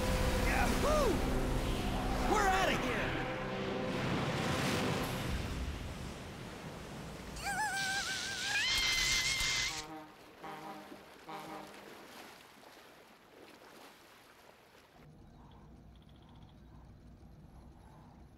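Cartoon sound effects of water surging up in a loud rush over dramatic music, easing after about six seconds. Short wordless vocal sounds follow with quieter music, and the sound drops low after about ten seconds.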